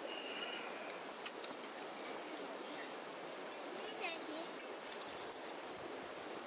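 Steady rushing of a stream, with a few light clinks from a metal spoon stirring in a mug. A short voice sound rises over it about four seconds in.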